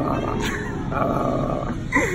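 A bull-like bellowing growl used as a logo sound effect. It comes in two long stretches with a brief dip about half a second in.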